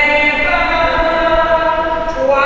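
A single voice singing a slow church chant in long, held notes.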